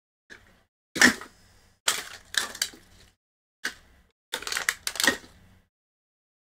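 Plastic and paper wrappers crinkling as they are crumpled and gathered up by hand, in a string of short crackly bursts.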